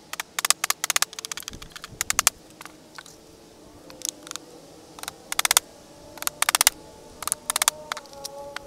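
Claw hammer driving nails into old weathered wooden boards, in quick runs of several sharp taps each, repeated about every second.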